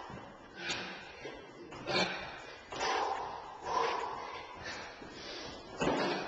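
Sneakers landing and scuffing on a concrete garage floor during jumping split squats, about once a second, with hard breaths between jumps.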